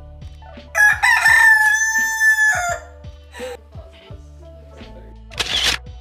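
White Silkie rooster crowing once: a single loud, steady call lasting about two seconds, starting just under a second in.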